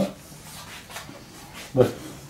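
Faint rubbing and rustling of cloth as hands work at the back of a cotton T-shirt, ending with a short spoken word near the end.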